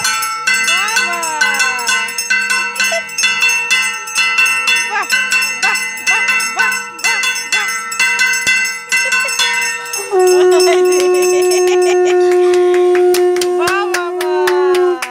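A bell-metal plate (kansar) struck rapidly and repeatedly with a stick, ringing metallically. About ten seconds in, a conch shell (shankha) is blown in one long, steady, loud note over the ringing.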